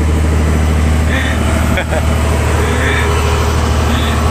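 Fishing boat's engine running steadily while under way, a constant low drone. A short knock sounds about two seconds in.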